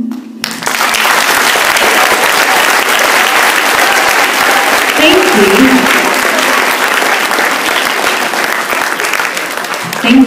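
An audience of schoolboys applauding as a song ends. The clapping starts about half a second in, as the music stops, and keeps up steadily to near the end. A short voice is heard over it about halfway through.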